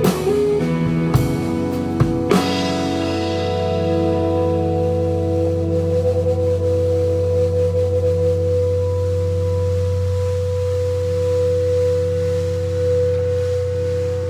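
A rock band with guitar, bass, violin and drums finishing a song: a few last drum and cymbal hits in the first couple of seconds, then a held chord left ringing, a steady low bass note under sustained higher tones.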